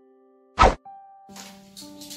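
A single short, loud pop sound effect about half a second in, cutting through fading piano-like music notes; music carries on after it.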